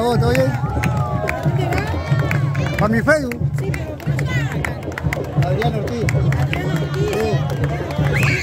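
Street-parade drumming, a steady low beat with frequent sharp strikes, under the chatter and shouts of a crowd with children's voices.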